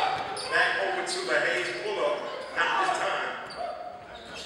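Sounds of an indoor basketball game: a basketball bouncing on the hardwood court, with indistinct shouts from players and spectators, echoing in a large gym.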